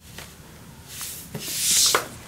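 A whoosh transition sound effect: a hiss that swells over the second half and cuts off suddenly.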